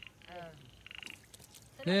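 Frogs calling: short, rapid pulsed trills repeated about once a second.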